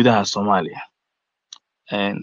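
A man speaking in short phrases, with a pause of dead silence of about a second in the middle.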